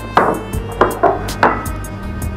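Background film-score music: a steady held pad with three struck percussive hits about half a second apart, each ringing off.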